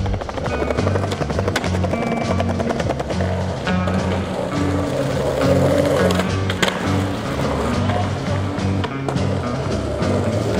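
Skateboard wheels rolling on asphalt and concrete, with a sharp clack of the board about two-thirds of the way through. Background music with a steady bass line plays throughout.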